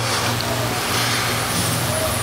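A steady low hum under a loud, even hiss, with no speech.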